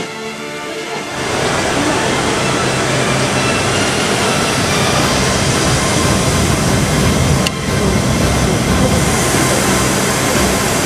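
Background music ends about a second in, giving way to the loud, steady din of an aircraft maintenance hangar: an even rushing noise with a low hum beneath it.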